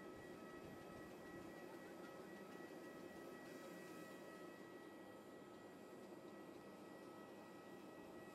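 Near silence: a faint steady background hiss with two thin, steady high tones.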